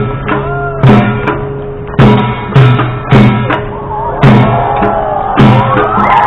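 Traditional Korean folk music for a tightrope act. A deep drum beats steadily, a heavy stroke about once a second with lighter strokes between, under a melody that slides in pitch.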